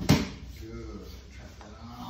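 A single heavy thump just after the start as a grappler, tipped forward by a bridge-and-roll, lands on his partner and the foam mats. A man's voice follows at a lower level.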